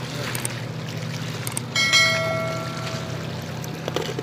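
A bell-like ding sound effect from the subscribe-button animation rings out about two seconds in and fades over a second or so. It sits over steady sea and wind noise with a low drone.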